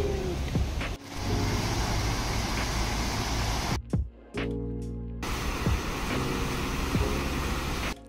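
Background music of soft, sustained chords with low bass notes, laid over a steady outdoor hiss that drops out for about a second and a half midway, leaving the music alone.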